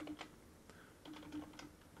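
Faint computer-keyboard typing, a few keystrokes.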